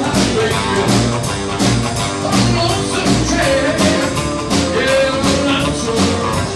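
Live rockabilly band playing: strummed acoustic guitar, electric guitar and upright bass over a fast, steady beat.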